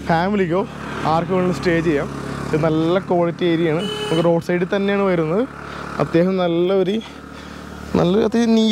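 A man talking, with the low engine sound of a passing motorbike underneath through the first half.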